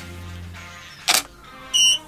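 A camera shutter clicks once as a test shot is taken. About half a second later comes a short, high electronic beep, over quiet background music.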